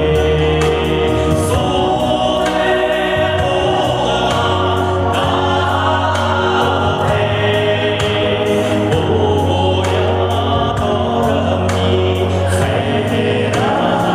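A man singing a Buryat-language pop song through a microphone over a backing track with a steady bass line and a regular beat.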